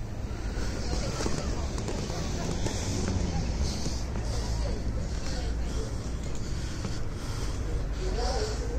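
Wind buffeting a phone microphone outdoors, a steady low rumble, with faint voices in the background.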